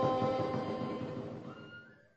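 A bài chòi folk ensemble's music ending: several held instrumental notes fade out over about two seconds, with a short rising slide near the end.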